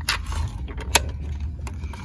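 Small plastic clicks and taps from a capsule toy machine's coin mechanism as its spring-loaded arm is pressed down by hand, with one sharper click about a second in.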